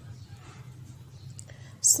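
A pause in reading aloud: only a faint steady low hum and soft breath noise, then near the end a hissing 'sh' as the voice starts the next word.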